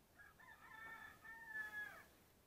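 A rooster crowing once, faint: one long call that holds its pitch and drops at the end.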